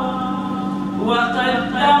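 Unaccompanied Arabic religious chanting through a microphone, held notes giving way to a new rising phrase about a second in.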